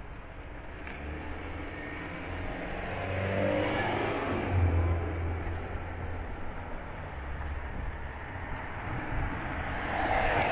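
Cars driving past on a rain-soaked road, tyres on the wet surface, with a steady wash of heavy rain behind. One car passes loudest about halfway through, and another comes up close near the end.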